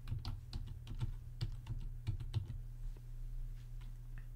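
Computer keyboard typing: a run of light, irregularly spaced key clicks over a faint steady low hum.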